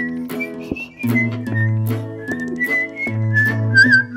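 Whistled melody over strummed guitar chords: the instrumental break of a song.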